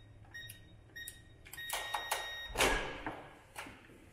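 Electronic door keypad beeping short and high at each key press, then giving one longer beep as the code is accepted. About two and a half seconds in, the door's latch and door give a clunk as it is pushed open.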